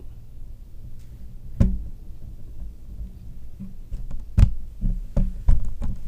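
Handling noise from a camera being carried and repositioned: a low rumble with several sharp knocks and bumps, the loudest about a second and a half in and again about four and a half seconds in, with a few more close together near the end.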